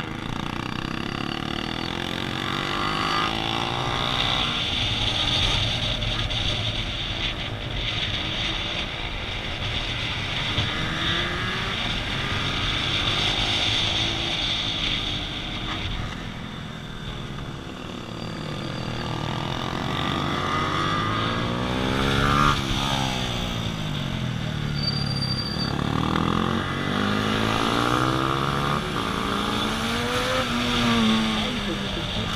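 Motorcycle engines revving up and down as the bikes accelerate out of and slow into the corners of a tight track, heard from onboard with a steady rush of wind and road noise.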